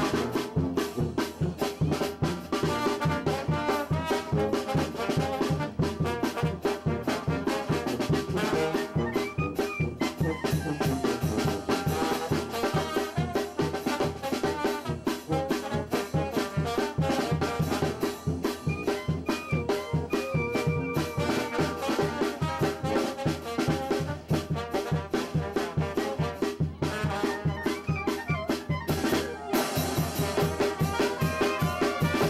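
Brass band music with trumpets, trombones and drums, playing dance music over a quick, steady beat.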